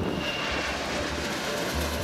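Twin-engine jet airliner taking off: a steady rush of jet engine noise at takeoff power, easing slightly near the end.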